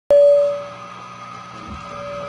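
A single bell-like note struck sharply, loud at first and then fading quickly to a long, steady ringing.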